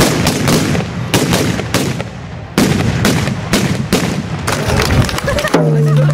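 A ragged volley of Japanese matchlock guns (hinawajū) firing black-powder charges: many sharp shots in quick, irregular succession, with a short lull about two and a half seconds in. Near the end a steady low tone begins.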